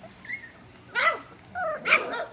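Four-week-old Standard Schnauzer puppies yipping and whining, with a faint short call early and a loud yip about a second in.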